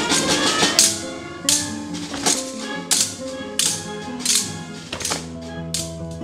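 Brass band music for a sword dance, with sharp metallic clashes of swords about every three-quarters of a second.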